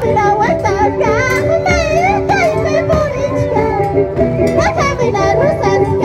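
Andean carnival music from an Ayacucho rural troupe: high-pitched wavering singing voices over steady held instrumental notes, with light percussive strokes.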